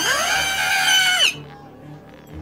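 Animated characters letting out a loud shocked scream together. It starts suddenly, swoops up, holds for about a second and drops away, over background music.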